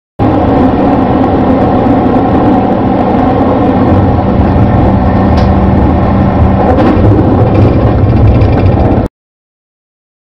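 Loud, steady running noise of a moving train, heard from on board, cutting off abruptly about nine seconds in.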